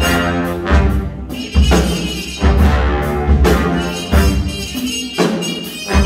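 High school big band jazz ensemble playing a jazz-rock groove: brass and saxophones over bass and drums, with heavy low beats a little under a second apart and a trumpet soloist out front.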